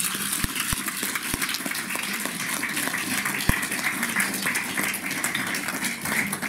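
Audience applauding: many hands clapping steadily.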